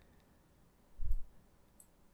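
Faint computer-mouse clicks over quiet room tone, with one short, soft, low thump about a second in, as the playing video is paused and rewound to be replayed.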